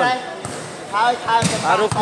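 A volleyball being struck or bouncing: a couple of sharp smacks in the second half, under commentary.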